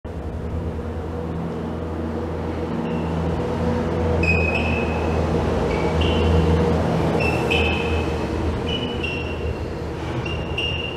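A 500 kg loaded sled dragged across a concrete floor: a steady low grinding drone that swells in the middle, with short high squeaks coming and going.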